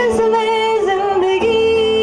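A young man singing live through a headset microphone, accompanying himself on acoustic guitar. His voice slides between notes, then holds one long high note from a little past halfway.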